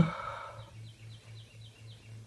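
A bird calling in the woods: a run of about six short, high, falling chirps, about four a second, starting about half a second in.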